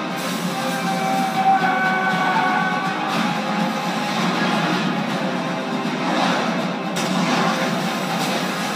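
Film score music played back through a TV's speaker, thin in the bass, with held high notes from about a second in. A sharp hit sounds near the end.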